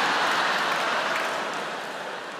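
A large theatre audience applauding and laughing, the noise fading away toward the end.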